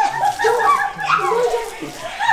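People's voices: unclear talk and cries from a group, with no distinct words.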